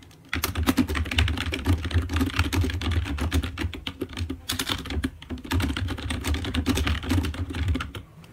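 Fast typing on a computer keyboard: a dense run of keystroke clicks with a dull thud under each, starting a moment in, with a couple of brief pauses midway.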